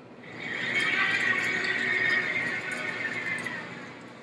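Keg-A-Droid robot base's electric drive motors whining steadily as the robot turns in place. The whine fades out after about three seconds.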